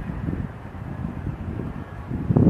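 Wind buffeting the microphone: a low, uneven noise that rises and falls.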